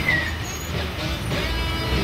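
Route minibus engine running close by in street traffic, a low steady rumble, with guitar music playing over it.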